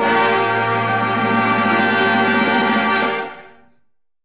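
Orchestra holding the final chord at the end of a sung Italian serenade, fading out about three seconds in.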